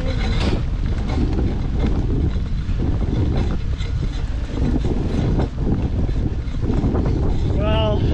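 Wind buffeting the microphone of a camera on a moving mountain bike, a steady low rumble, with faint scattered clicks from the bike's unhappy drivetrain, its chain creaking.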